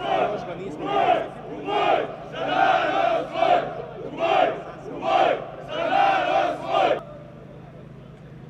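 A crowd shouting a chant in unison, loud rhythmic shouts about once a second, cutting off abruptly about seven seconds in.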